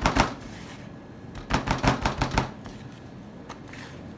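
A hand patting a raw chicken breast into a plate of breadcrumb and oat coating: a quick run of soft pats at the start and another run of four or five pats about a second and a half in.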